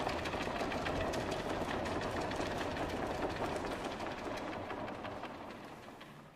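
A small group applauding: a dense, quick patter of claps that swells in, holds and then dies away near the end, with no music playing.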